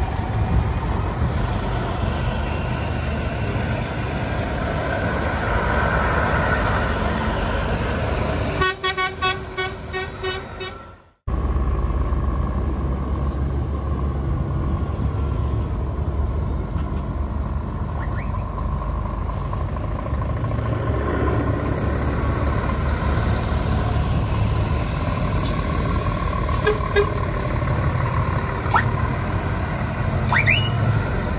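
Heavy trucks' diesel engines running as they drive slowly past, with a horn sounded in a run of short toots about nine seconds in. The sound cuts out abruptly for a moment about eleven seconds in, then the engine rumble carries on.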